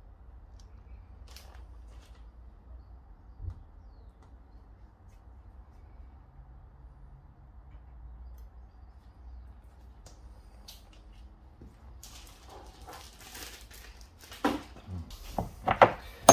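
A low steady hum with a few faint clicks of small metal parts being handled; near the end, rustling and then a run of loud metallic clinks and knocks as parts and tools are moved about on the bench.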